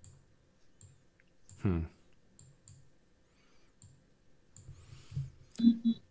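Faint, scattered sharp clicks, a couple each second, with a short 'hmm' from a man about a second and a half in and an 'uh' just before the end.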